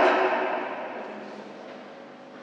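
The echo of a loud shout dying away slowly in a large sports hall, fading steadily over about two seconds.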